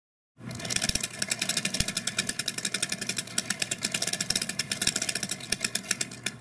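Hand-cranked flip-card animation machine: its cards snap past a stop one after another in a rapid, even clatter of clicks as the crank turns.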